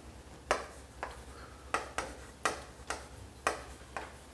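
Chalk tapping and knocking against a chalkboard as labels are written: a series of sharp, separate taps about every half second.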